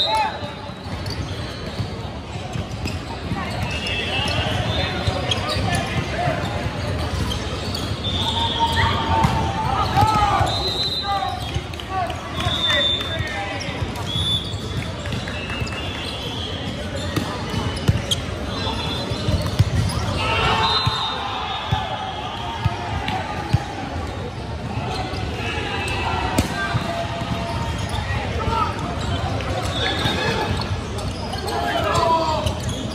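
Echoing hubbub of an indoor volleyball gym: indistinct voices of players and spectators, short high squeaks of sneakers on the hardwood court, and a few sharp thuds of balls striking.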